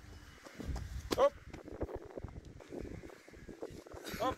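Voices shouting at a track race, the loudest shout about a second in, over the footfalls of runners on the synthetic track.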